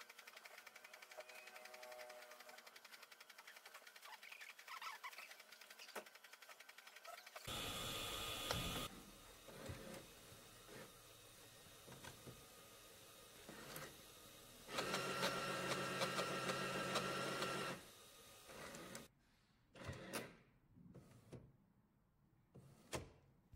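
A4 DTF printer mechanism running. A fast, even fluttering goes on for the first several seconds, then come two spells of louder motor whirring with a steady whine: a short one about eight seconds in and a longer one about two-thirds of the way through. A few sharp clicks follow near the end.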